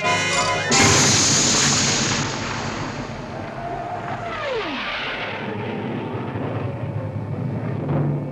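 Cartoon cannon sound effect: a sudden loud blast just under a second in that trails off slowly into a long rushing noise. A falling whistle comes about four to five seconds in.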